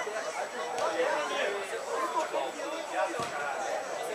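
Distant, overlapping voices of football players and onlookers chattering and calling out, with a single low thump about three seconds in.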